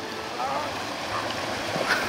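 Steady rush of a small, fast-flowing stream running white through the grass, with a faint voice briefly in the background.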